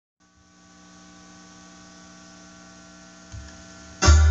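Steady electrical mains hum with a faint hiss from the playback chain, fading in at the start. A low thump about three seconds in, followed by a low rumble.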